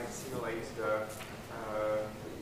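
Faint speech from a person away from the microphone, in bursts of a few held syllables.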